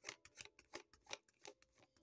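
A deck of cards being shuffled by hand: a string of faint, irregular soft clicks as the cards slide and tap against each other.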